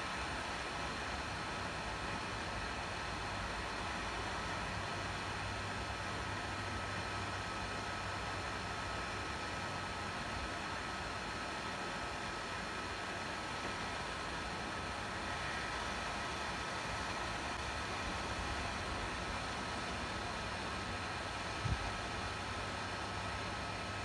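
Hot air rework station blowing steadily at a board-mounted power IC to reflow or remove it: an even airy hiss with a faint steady high whine, and one small click near the end.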